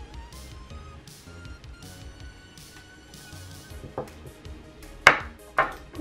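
Light background music with a steady beat. Near the end come three sharp knocks, the loudest about five seconds in: a glass beer bottle and a glass beer mug being set down on a glass tabletop.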